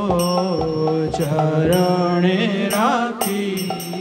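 Bengali devotional kirtan: a man's voice draws out a long melodic phrase, wavering near the end, over a steady drone. Mridanga (khol) drum strokes and the high ringing of small hand cymbals keep time.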